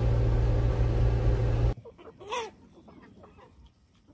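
A side-by-side utility vehicle's engine runs steadily, heard from inside its cab, and cuts off abruptly nearly halfway through. After a drop to quiet outdoor air, a chicken clucks once.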